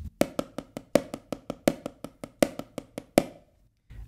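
Wooden drumsticks playing paradiddles on a Reflexx practice pad: a fast, even run of sharp taps with louder accented strokes recurring at regular intervals. The taps stop about three seconds in.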